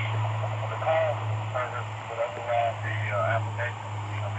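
Speech: a voice coming through a small speaker, thin and narrow like a phone call, over a steady low hum.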